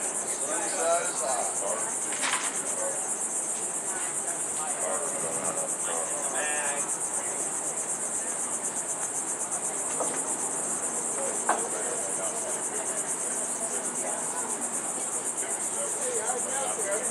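A steady, high-pitched insect chorus with a fine fast pulse, with a few faint voices and a couple of sharp clicks under it.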